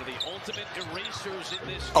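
Broadcast sound of a basketball game: a ball being dribbled on the hardwood court, with faint play-by-play commentary underneath.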